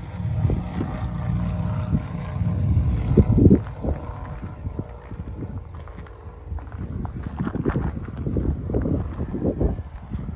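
Footsteps crunching on gravel in an irregular walking rhythm, with wind buffeting the microphone.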